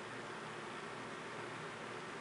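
Steady low hiss of background room tone, with no distinct sounds standing out.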